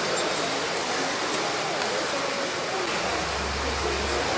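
Steady rushing room noise with faint voices underneath. A low hum comes in about three seconds in.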